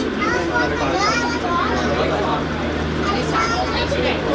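Passengers talking in a tram cabin, a child's high voice among them, over a steady low hum.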